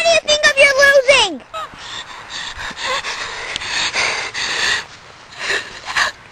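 A boy's loud, drawn-out yell with no words, held on one pitch for about a second and a half and then sliding down. Quieter voices follow.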